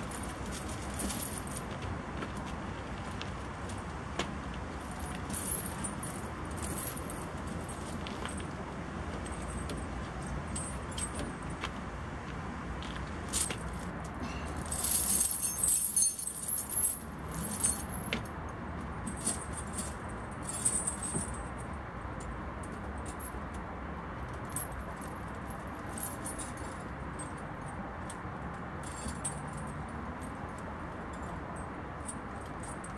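Steel snow chains clinking and jangling as they are worked around a truck's drive-wheel tyre, with scattered single clinks and a louder spell of rattling about halfway through. Steady background noise runs underneath.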